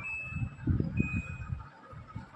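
Top-loading washing machine's control panel beeping as its buttons are pressed: two short high beeps, one at the start and one about a second in, over a low irregular rumble.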